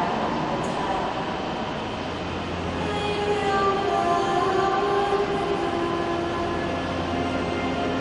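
Concert band playing slow, held chords, the notes changing slowly, with a low sustained bass note joining about two and a half seconds in and stopping near the end.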